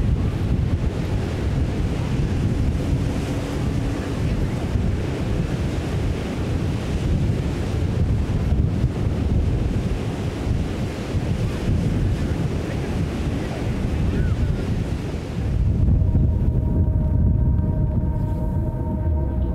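Wind buffeting the microphone over the steady wash of surf on the shore. Near the end the surf hiss falls away, leaving low wind rumble with faint steady tones.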